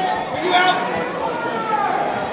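Overlapping voices of ringside spectators and wrestlers chattering and calling out.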